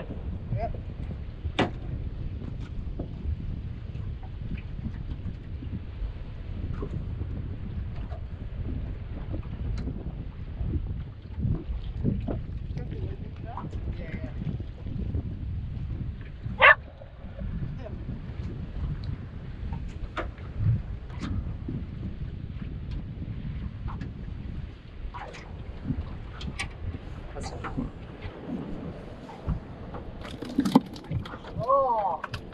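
Steady low rumble of wind and water around a small aluminium fishing boat, with scattered sharp clicks and knocks, the loudest about two-thirds of the way through.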